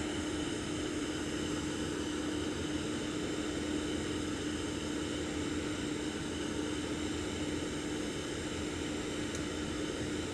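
A steady mechanical drone with one constant low hum tone running under an even hiss, unchanging throughout.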